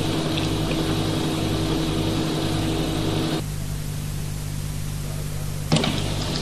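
Steady low hum with hiss, no voice. About three and a half seconds in, the hiss and a higher steady tone drop away, leaving the hum.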